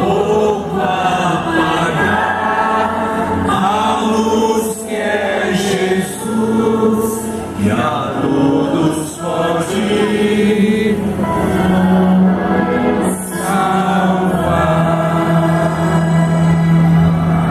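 Live gospel worship music played over a big outdoor sound system: many voices singing together over a held low keyboard note.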